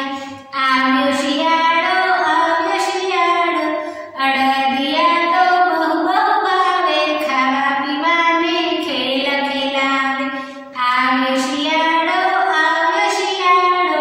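A woman's high voice singing a Hindi children's song in a melodic line, phrase after phrase, with short breathing pauses about half a second, four seconds and ten and a half seconds in.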